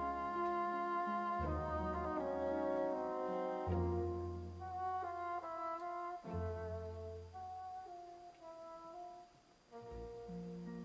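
Recorded opera orchestra playing held chords, with horns and brass prominent over changing bass notes. It grows softer about halfway through and dips almost to nothing just before the end.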